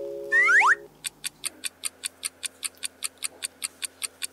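Edited-in sound effects: a short held musical chord with a quick rising swoosh, then a fast clock-ticking effect, about five ticks a second, marking the countdown of thinking time for the quiz question.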